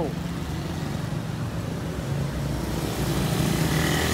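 Street traffic: engines of cars, motorcycles and motorized tricycles running with a steady low hum, growing louder near the end as a vehicle passes close.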